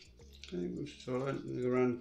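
A man speaking, starting about half a second in after a brief quiet moment.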